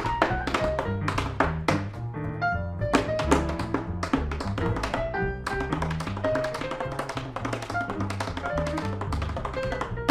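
Tap shoes striking a wooden tap board in fast, dense rhythms, over a jazz accompaniment of upright bass and piano.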